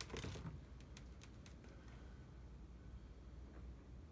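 A brief rustling scrape in the first half second, then a few light clicks, as a wet poured-paint canvas is handled and lifted off the paper-covered table. A faint low hum underneath.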